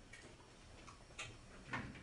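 A few faint, sharp clicks in a hushed room, the loudest two a little past one second and near the end: the silence of a band held under a raised baton just before its first note.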